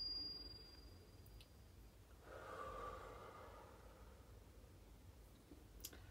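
A struck chime's ring dying away in the first half-second, then one slow, soft breath out about two seconds in, lasting a second or so: the last deep exhale of a guided breathing exercise.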